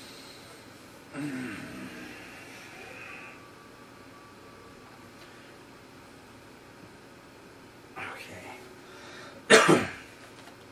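A person clears their throat about a second in, then gives a small throat sound near the end followed by a loud, sharp cough.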